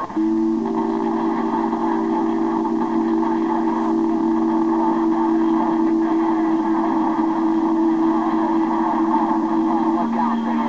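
A strong station received on the 11-metre CB band, heard through the transceiver's speaker: a steady two-pitch tone keyed up just after the start and held, over a haze of band noise.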